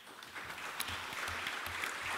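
Audience applause, starting about half a second in and then holding steady.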